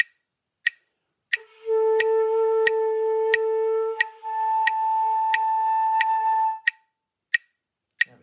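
Concert flute holding a B-flat as a whole note, then slurring up the octave without tonguing and holding the upper note: an octave/register slur drill. A metronome ticks steadily underneath, about three clicks every two seconds.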